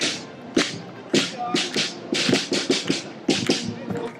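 Footsteps of a small group of marchers on asphalt: short, sharp shoe clacks at an uneven pace, several a second, over faint crowd background.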